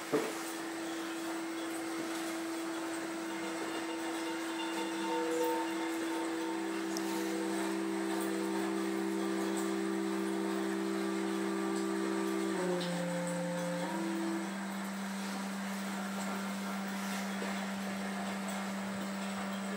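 Sustained drone music of steady held tones. One tone enters with a click at the start and a lower one joins about six seconds in. Both shift briefly to a different chord around two-thirds of the way through, then the lower tone carries on alone.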